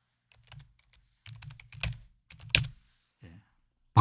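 Typing on a computer keyboard: a quick run of keystrokes over about three seconds, with a couple of louder taps near the middle.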